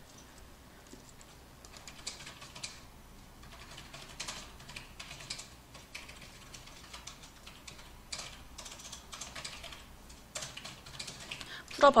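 Computer keyboard being typed on in short runs of soft key clicks, with pauses of a second or so between runs.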